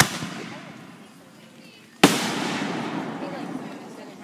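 Two aerial firework shells bursting: a sharp bang at the start and a louder one about two seconds in, each followed by a long fading tail.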